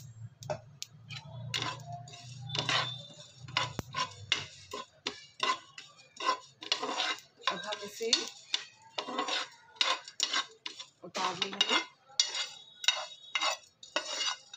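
Metal spoon scraping and stirring whole spice seeds around a flat tawa griddle in repeated short strokes as they dry-roast. A low hum runs under the first few seconds.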